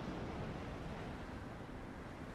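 A steady hiss of wind and sea surf in a film soundtrack's ambience, slowly fading a little.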